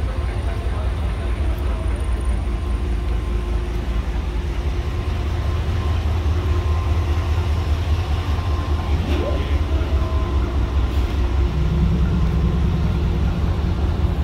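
Pakistan Railways diesel-electric locomotive idling with a steady, deep engine rumble. About three-quarters of the way through, a second, higher hum joins in.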